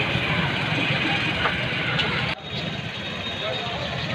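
Street ambience: a steady low rumble of vehicle engines mixed with faint voices. A little over two seconds in it breaks off abruptly at an edit cut, and the same kind of noise resumes slightly quieter.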